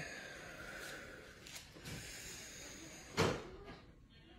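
Faint rustling with one sharp knock about three seconds in.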